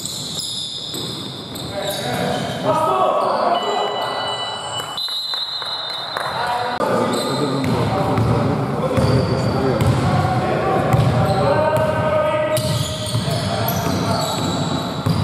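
Basketball game sounds in a gym: a ball bouncing on the hardwood court and players' voices calling out, echoing in the hall, with many short knocks and squeaks throughout.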